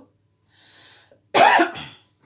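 A woman coughs once, sharply, about a second and a half in, after a faint breath in.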